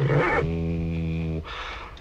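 A deep male voice sings a short syllable, then holds a low, steady note for about a second before breaking off.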